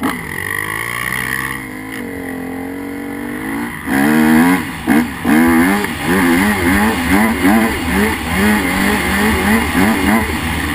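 Dirt bike engine heard from the rider's own bike. It runs at low, steady revs for about four seconds, then opens up and revs up and down over and over as the bike pulls away along the track.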